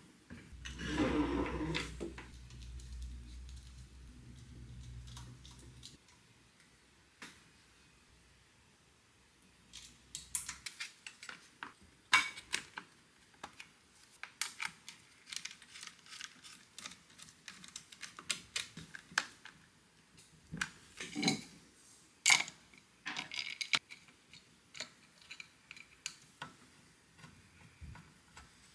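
Scattered clicks, taps and light clatter of plastic and metal engine parts being handled and fitted by hand onto a small air-cooled generator engine, coming in irregular bursts in the second half.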